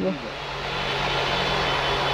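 Steady rushing background noise with a low hum underneath, getting a little louder over the two seconds, like a fan, air conditioning or distant traffic.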